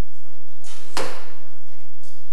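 Arrow hissing through the air, growing louder, and striking the target with a sharp impact about a second in.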